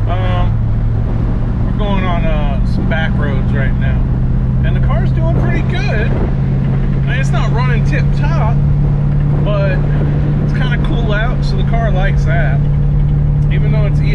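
1967 Chevrolet Caprice's engine and road noise heard from inside the cabin while driving: a steady drone whose pitch climbs slowly as the car gathers speed.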